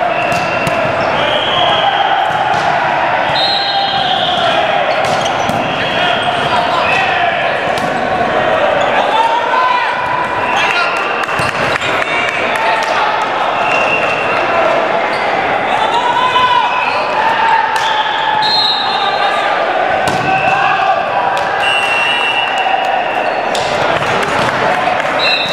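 Indoor volleyball game in a gymnasium: the ball being hit and thumping, over a constant echoing din of players' and onlookers' voices, with short high-pitched squeaks.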